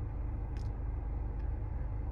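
Steady low rumble and hum of a car's cabin with the car idling, with two faint ticks.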